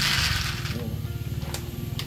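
Handfuls of dry kibble poured from a plastic sack into a plastic bowl, a rattling rush in the first half second, then a single click about one and a half seconds in.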